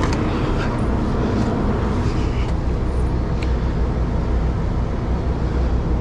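Kenworth semi-truck's diesel engine idling steadily, with a few light clicks and knocks from someone climbing into the cab.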